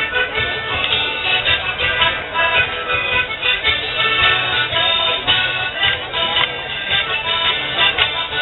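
Live folk dance music led by an accordion, playing a steady tune to accompany morris dancing.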